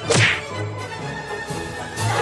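A quick whoosh sound effect that falls sharply in pitch, the loudest thing here, just after the start, over background music with a repeating bass note.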